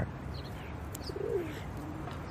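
Outdoor background ambience: a steady low hiss with a few faint bird chirps and a short low coo, like a dove's, a little over a second in.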